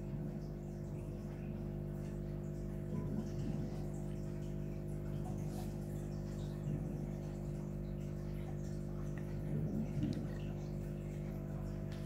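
Steady background hum made of several fixed low tones, with faint distant voices now and then.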